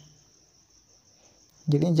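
Near silence with a faint, steady high-pitched drone underneath, before a man's voice resumes near the end.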